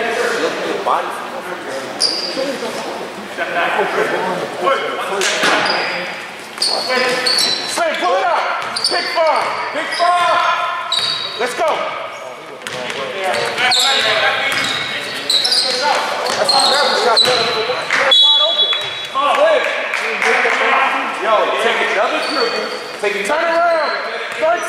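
A basketball being dribbled on a gym court amid players' shouts, with short high-pitched sneaker squeaks, all echoing in a large gym.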